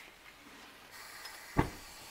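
Propane hissing out of a small camp mantle lantern's valve on a one-pound propane bottle, starting about a second in as the gas is turned on, with one sharp click a little later as it is lit.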